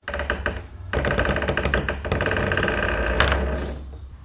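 Creaking door sound effect: a long creak made of rapid clicks over a pitched groan, starting abruptly. It dips briefly soon after the start, then runs on and fades near the end.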